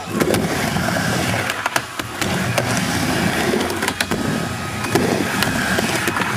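Skateboard wheels rolling on a wooden halfpipe: a steady rumble broken by several sharp clacks as the boards hit the ramp.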